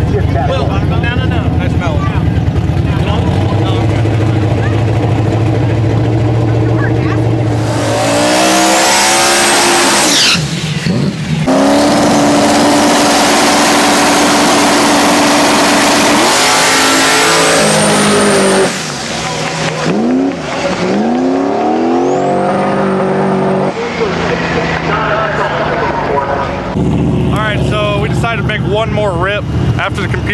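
Boosted drag-race Mustang engine held at steady revs, then launching at wide-open throttle about eight seconds in. The revs climb through the gears with a high whistle rising alongside. It cuts off suddenly about two-thirds of the way through, and the revs fall as the car slows.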